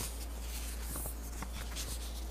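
Faint rustling and scratching of paper being handled on a desk, with a few soft ticks, over a steady low hum.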